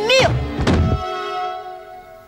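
Dull, heavy thuds of a head being banged behind a closed door, two blows within the first second, then a held musical note that fades away.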